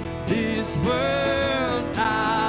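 Live worship song: acoustic guitar strummed under singing voices, with one long sung note held from about half a second in to near the end.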